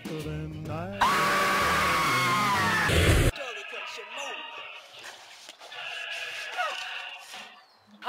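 A young boy's loud, sustained scream lasting about two seconds and cutting off abruptly, over background music. After that comes quieter music.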